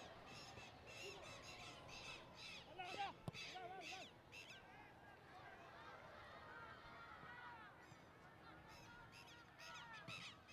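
Faint, distant shouts and calls of players on a football pitch, short and repeated, heard over quiet stadium ambience, with a single ball kick about three seconds in.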